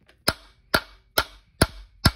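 Hammer tapping a reverse-flute bolt extractor onto a stripped Torx flywheel bolt to seat its teeth: four sharp metal-on-metal strikes, about two a second, each with a short ring.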